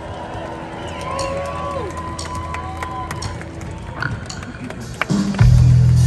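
Live rock band heard through a large outdoor PA, playing a quiet slide-guitar intro with notes gliding up and down over a sustained low tone, with audience voices over it. About five seconds in, the full band comes in loudly with heavy bass and drums.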